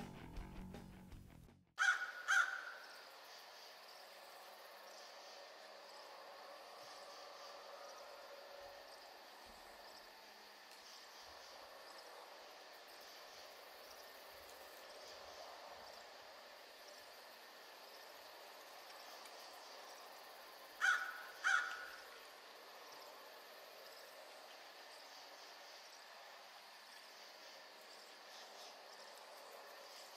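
Faint steady outdoor-night ambience with an insect-like background. Over it come crow-like caws: one about two seconds in and two in quick succession about twenty-one seconds in.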